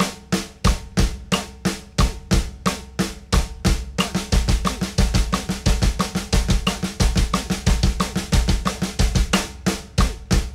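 Drum kit: a copper snare drum struck in even eighth notes, with double bass drum kicks landing in unison with every other pair of hand strokes. About four seconds in the strokes double to sixteenth notes, and they drop back to the slower rate near the end.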